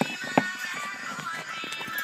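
A pop song with a sung vocal playing, with a sharp handling knock about half a second in and a lighter click at the start.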